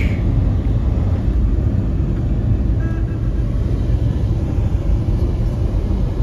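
Steady low road rumble of a car driving, heard from inside the cabin: engine and tyre noise.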